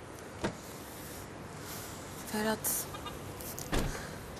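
A sharp click about half a second in, a brief voice sound a little past halfway, and a thump near the end, over a faint steady hiss.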